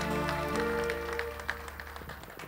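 A live band's final held chord rings and fades away over the first second or so, while scattered audience clapping begins.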